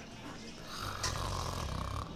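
A sleeping person snoring: one long, rasping snore that starts a little under a second in.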